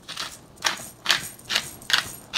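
Black pepper being dispensed over a pan of food in about five short, scratchy bursts, roughly two a second.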